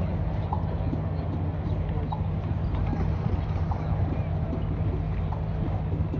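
A dressage horse's hooves striking turf as it trots, soft and faint, over a steady low rumble of outdoor background noise.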